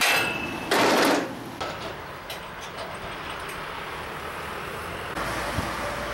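Hammer striking a steel snow-fence post bracket, a sharp metallic clank that rings on briefly, followed about a second in by a louder, longer metal clatter and a few faint clicks. Near the end a steady low rumble of road traffic takes over.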